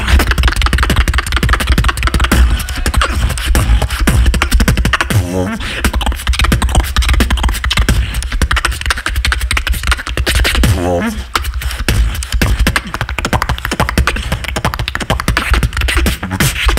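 Solo beatboxing into a handheld microphone: fast rhythmic mouth-made kicks, snares and clicks over a heavy continuous bass, with short warbling pitched vocal sounds about five and eleven seconds in.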